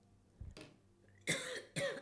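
A woman coughing and clearing her throat: a softer throat sound about half a second in, then two loud coughs in quick succession.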